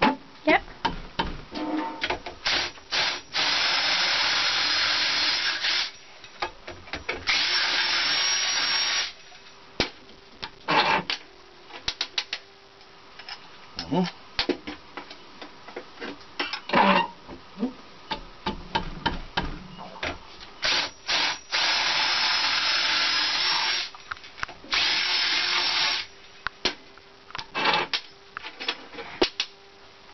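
Power drill run in four bursts of about two seconds each, drilling out the holes of copper crimp-on terminals held in a bench vise. Short metallic clicks and taps come between the runs as the terminals are handled.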